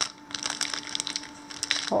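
Clear plastic bag crinkling in a run of small, irregular crackles as a hand rummages inside it to pull out a fabric label.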